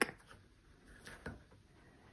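Faint handling sounds as a fabric strip is worked round the back of a weave's warp strands, with two soft taps about a second in.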